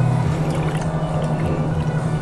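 Engine coolant pouring from a plastic gallon jug into the coolant reservoir, a steady stream with a constant low tone.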